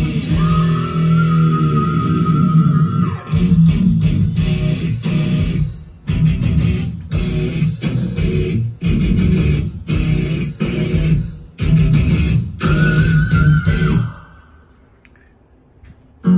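Rock music with electric guitar and bass, played in hard stop-start chops, with a held high guitar note near the start and again just before the end. The music cuts off suddenly about 14 seconds in, leaving a quiet stretch.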